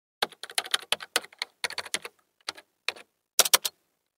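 Keys of a computer keyboard being typed at an uneven pace, about twenty sharp separate keystrokes, ending with a quick run of three or four.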